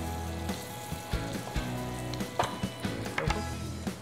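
Diced bacon frying in its own fat with a melting pat of butter in a small skillet, a steady sizzle with a few short clicks. Background music plays underneath.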